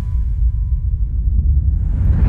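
Cinematic title-card sound effect: a loud, deep, steady rumble with a faint thin high tone above it.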